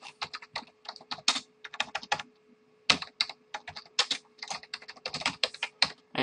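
Typing on a computer keyboard: quick runs of keystrokes, with a short pause about two seconds in.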